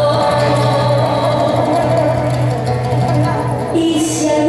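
Live song: a woman singing one long held note over a nylon-string classical guitar.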